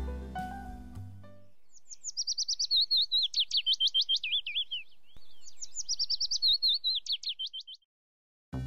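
Background music fades out about a second and a half in, then a songbird sings two long phrases of fast, high chirps and trills with a short gap between them, the second phrase shorter.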